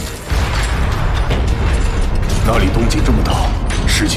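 Sci-fi soundtrack of powered armor: a deep steady rumble under mechanical clicks and ratcheting, with a man's voice coming in about halfway through.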